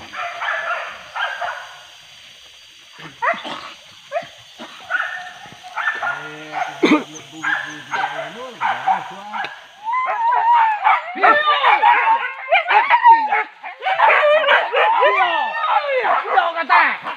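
Several hunting dogs yelping and barking. The calls are scattered at first, then from about ten seconds in they become a dense, continuous chorus of high, overlapping yelps.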